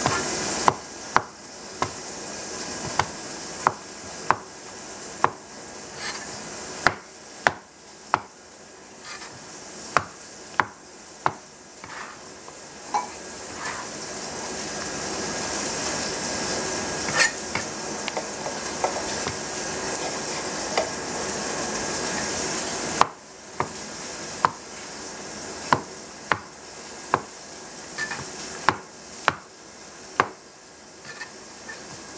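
Chinese cleaver slicing mushrooms on a plastic cutting board: sharp, irregular knocks of the blade on the board, roughly one a second, with pauses between batches. A steady hiss runs underneath and cuts off sharply about three-quarters of the way through.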